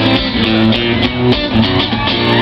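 Live acoustic guitar playing an instrumental solo break: a quick run of single picked notes over the chords.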